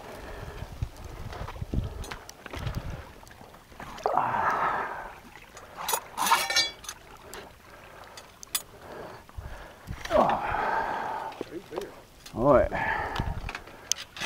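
Indistinct low voices, with scattered clicks and knocks and a brief rapid rattle from a steel foot trap and its chain being handled on a rebar drowning rod.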